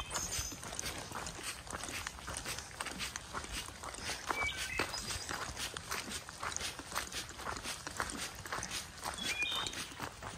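Footsteps crunching steadily and irregularly on a gravel and rock hiking trail, with a bird chirping briefly a few times in the forest around.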